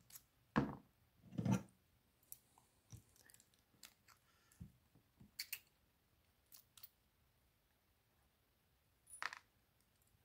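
Metal clinks and clicks from a euro-profile lock cylinder and pliers being handled as the cylinder is taken apart. Two louder knocks come about half a second and a second and a half in, followed by a scatter of lighter ticks.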